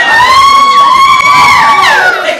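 A long, shrill scream held for about two seconds. It rises at the start, holds one high pitch and drops away at the end.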